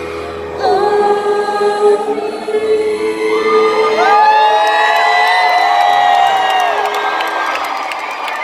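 Live grand piano playing through the PA, with a woman's held sung note over it. From about halfway, many voices in the audience whoop and cheer over the piano.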